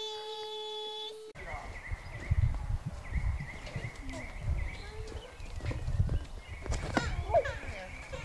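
A steady pitched tone that cuts off abruptly about a second in. It is followed by outdoor background with low rumbling on the microphone, faint voices and a thin high chirp that comes and goes.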